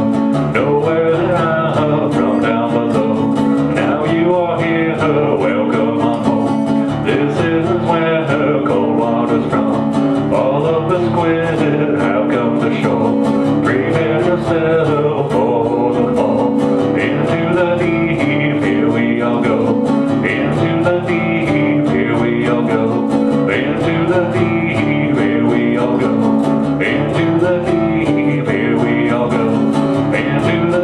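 Resonator guitar played solo with a steady, driving picked rhythm.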